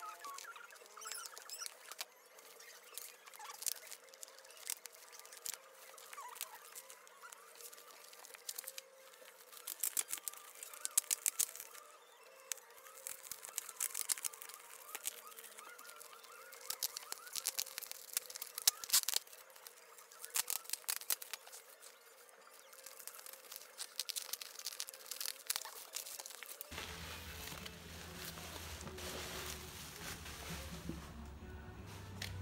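Plastic bubble-wrap shipping mailer being handled and opened by hand: irregular crinkling and crackling with sharp clicks, densest about ten and nineteen seconds in. Background music comes in near the end.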